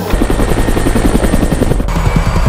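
Helicopter running with its main rotor turning: a steady low engine and turbine hum with a fast, even beat of the rotor blades.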